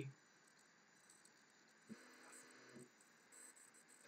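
Near silence: faint room tone, with a brief, faint low hum about two seconds in.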